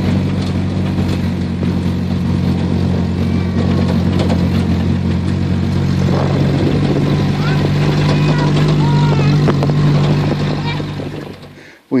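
A Jeep's engine runs steadily at low speed as it drives up a rough dirt trail, rising a little in pitch and strength about eight seconds in, then fading out near the end.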